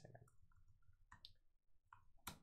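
Near silence with a few faint computer-keyboard key clicks.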